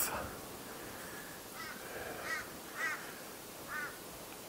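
A bird calling faintly in four short calls spread across a few seconds, over a steady outdoor background.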